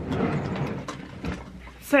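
Rummaging through makeup products: plastic cases and tubes clattering and clicking together, busiest in the first second, then a few lighter separate clicks.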